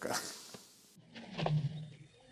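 A lion's low growl on an old film soundtrack, heard briefly in the second half.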